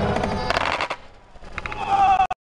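Skateboard hitting concrete after an ollie off a ledge: a cluster of sharp clatters about half a second in as the wheels and deck slam down and the rider bails, then a few lighter knocks near the end.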